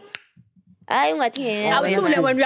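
Conversation in a small studio room. One short, sharp click comes near the start, followed by a brief pause, and then talking resumes about a second in.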